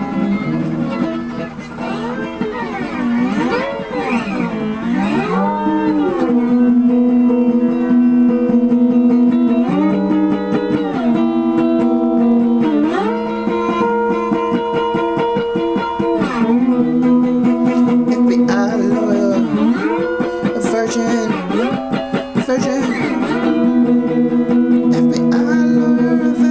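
Guitar music with long held notes, and notes that bend and slide up and down a few seconds in and again past the middle.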